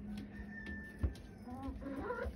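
Bantam chickens giving faint, soft calls, with a single sharp tap about a second in.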